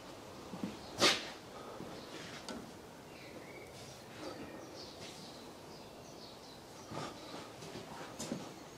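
Mostly quiet workshop with one short, sharp noise about a second in and faint scattered handling sounds after it; no engine is running.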